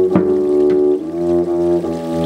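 Double bass played with the bow, holding long sustained notes and stepping to a slightly lower note about a second in, with a single drum stroke just after the start.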